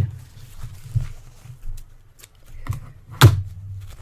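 Handling noise of a burlap fabric sample being turned over and moved on a cutting mat: a few soft knocks and rustles, the loudest a sharp knock a little past three seconds in.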